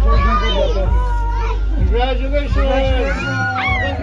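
Several people cheering and squealing excitedly at once, overlapping high-pitched wordless cries and whoops.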